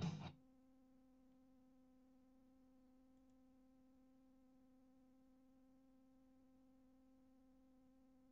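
Near silence with a faint, steady, unchanging hum after music cuts off just after the start.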